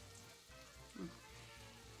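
Faint, steady sizzle of diced shallots sautéing in a pan, with a short hummed "mm" about a second in.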